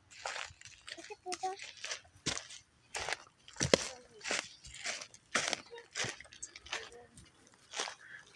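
Footsteps crunching on dry dirt, pine needles and dry grass at a steady walking pace, a little under two steps a second.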